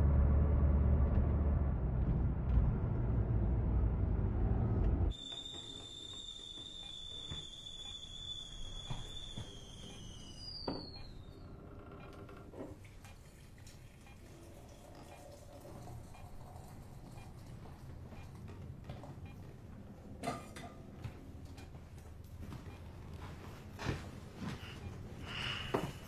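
A loud, deep rumble that cuts off abruptly about five seconds in. Then a high, steady ringing tone holds for about five seconds, bends downward and fades, leaving a quiet room with a few faint clicks near the end.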